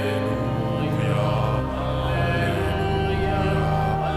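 Church pipe organ holding slow, sustained chords that change a few times, music for the Gospel acclamation at Mass.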